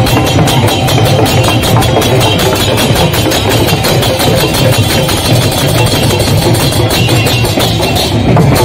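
A kirtan group's khol drums and small brass hand cymbals playing together in a loud, fast, steady rhythm.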